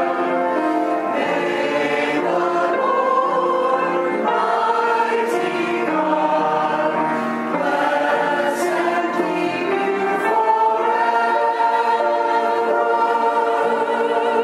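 Choir singing a sacred piece in several voice parts, holding long chords.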